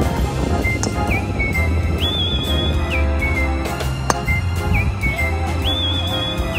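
Background music with a steady bass line and a high melody phrase that repeats. About four seconds in there is a short sharp click, a golf driver striking a ball off the tee.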